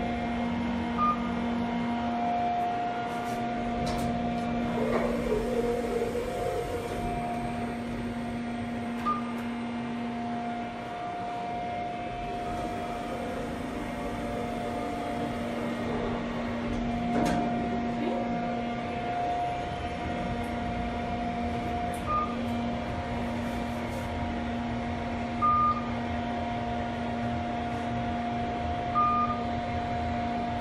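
Kone elevator car descending: a steady two-tone hum from the car's drive and ventilation fan, with about five short single beeps spread out as it passes floors, and a few faint clicks.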